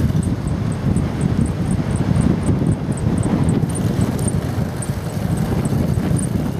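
Wind buffeting the microphone of a camera on a moving bicycle, a loud steady rumbling rush, with a faint high tick repeating about four times a second.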